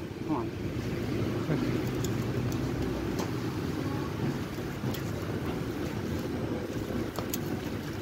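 Steady low outdoor rumble of street traffic and wind on the microphone, with a few faint clicks.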